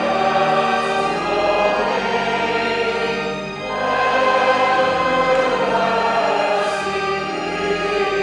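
A hymn sung by a congregation and choir with instrumental accompaniment, in long held notes with a short break between phrases about three and a half seconds in.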